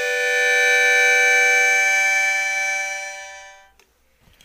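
Harmonica holding one long, steady chord that fades away about three and a half seconds in.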